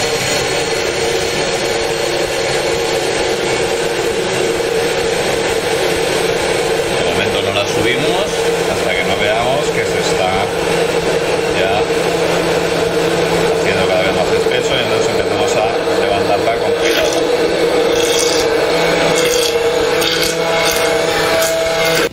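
Hand-held immersion blender running on its lowest speed with the blade held against the bottom of a tall glass jug, emulsifying egg, oil and garlic into ajoaceite (garlic mayonnaise). A steady motor whine on one pitch, with the churning of the thickening sauce, cuts off at the very end.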